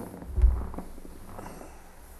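Handling noise picked up close to a lectern microphone: low bumps, rustling and small clicks as things on the lectern are moved, with the loudest thump about half a second in.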